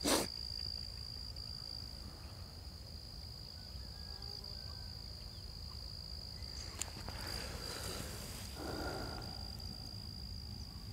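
A steady high-pitched insect drone over a low outdoor rumble, with a click of camera handling at the start and a brief rush of noise near the end.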